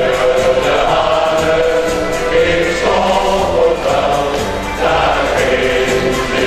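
Choral music: a group of voices singing held notes that change every second or so, at a steady level.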